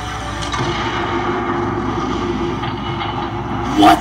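A TV drama's soundtrack playing over speakers: a low steady rumble with a held low note underneath, the sound design of a slow-motion gunshot scene.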